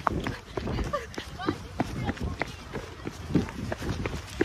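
Knocks and rubbing from a phone being handled and swung about, with faint voices of a group in the background.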